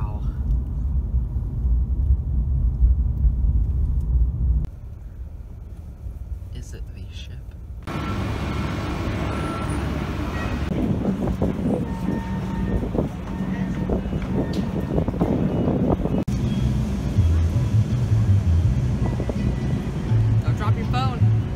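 Low road rumble inside a moving car for the first few seconds, then a quieter stretch, then outdoor background noise with indistinct voices.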